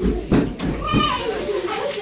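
Several voices overlapping in lively background chatter and calls, with no clear words, and a low bumping rumble close to the microphone in the first second.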